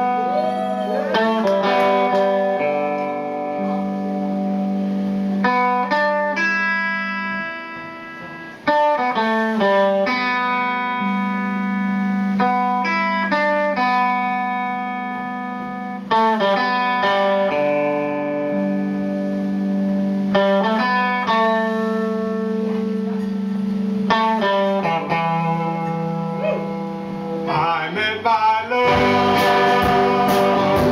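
A live band's electric guitars playing a slow instrumental introduction: strummed chords left to ring, struck again every few seconds, with a couple of bending notes about a second in. Drums come in near the end.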